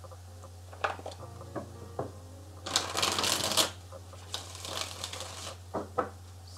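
A deck of tarot cards being shuffled by hand: a few light taps, then two longer bursts of shuffling about three and five seconds in, over a steady low hum.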